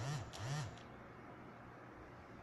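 A woman's voice makes two quick, low wordless sounds within the first moment, each rising then falling in pitch, like a hummed "hm-hm", then only faint room noise.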